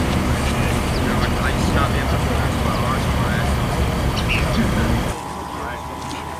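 Voices calling out over a loud, steady low rumble. About five seconds in the rumble stops and the sound turns quieter, with a faint steady tone.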